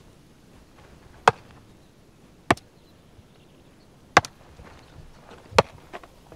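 Four sharp knocks spaced a little over a second apart, the third one doubled.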